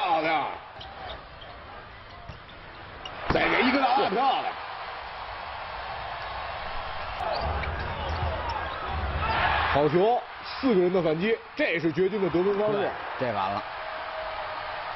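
Basketball arena crowd noise under bursts of commentary, with a basketball bouncing on the hardwood court.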